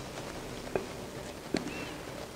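Two light knocks a little under a second apart as a glass mixing bowl and silicone spatula are handled against a granite countertop while sticky bread dough is scraped out. A brief faint squeak follows the second knock.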